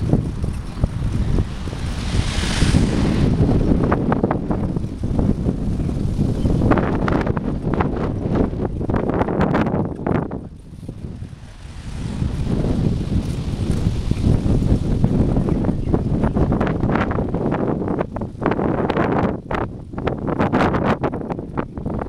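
Wind buffeting the microphone of a camera on a moving bicycle, a steady low rumble broken by many small rattling knocks from the ride over the path. The wind lets up for a second or so around the middle, then builds again.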